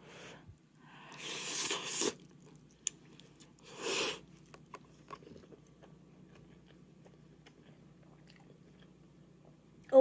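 Close-up eating sounds of ramen noodles: a long noisy slurp about a second in and a shorter one about four seconds in, then soft wet chewing clicks.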